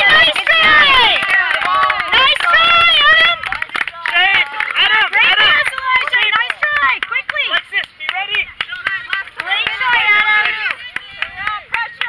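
Sideline spectators shouting and cheering, many high voices at once, with scattered hand claps. It is loudest for the first few seconds and then dies down.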